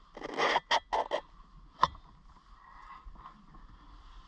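A few short scraping, rustling noises in quick succession, then a single sharp click about two seconds in.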